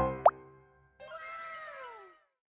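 Cartoon sound effects: quick rising pops at the start, then, about a second in, a single tone gliding downward for about a second.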